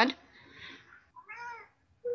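A single short, faint high-pitched call about a second in, its pitch rising and then falling.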